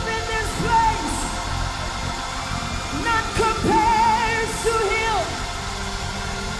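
Music with a voice singing; about four seconds in, a note is held with a wavering vibrato.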